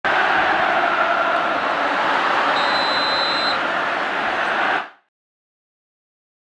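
Intro logo sound effect: a loud, steady rushing noise with a short, thin high tone held for about a second in the middle, fading out just before five seconds in.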